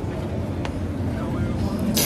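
Steady low rumble throughout, then near the end a short, loud hissing, squelchy comic sound effect of the kind captioned '뿌직' (a fart or squish noise).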